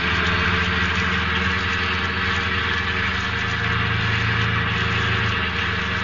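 Radio-drama sound effect of a car engine running steadily as the car drives off, with an even hiss over it.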